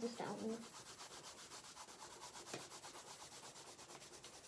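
Coloured pencil shading on sketchbook paper, a faint scratchy rubbing in quick, even back-and-forth strokes, several a second.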